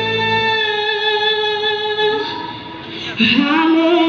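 A woman singing live, holding a long sustained note while the low backing accompaniment drops out about half a second in. After a brief dip she comes back in with a new note that slides up and is held again.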